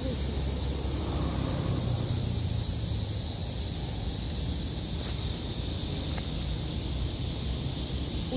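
Steady outdoor wind noise with low rumble on the microphone and a high hiss, with a couple of faint ticks about five and six seconds in.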